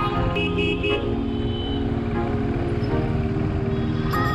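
Motorcycle engine running on the road, with a vehicle horn tooting briefly about half a second in.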